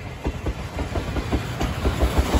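Steam-hauled passenger train passing close by: coach and locomotive wheels clacking rapidly and evenly over the rail joints over a low rumble, growing louder toward the end as the locomotive draws level.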